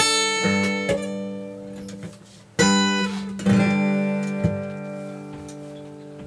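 Acoustic guitar strumming chords in a song's instrumental gap: about six separate strums, each left to ring and die away, the loudest about two and a half seconds in.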